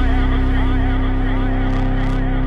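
Progressive house track at 122 BPM in C minor playing: held synth tones over a heavy bass, with a warbling synth line above.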